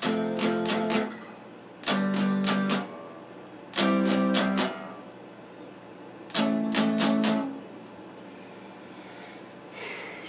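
Electric guitar strumming four short bursts of a chord, each about a second long and made of several quick strokes, with pauses of about a second between them.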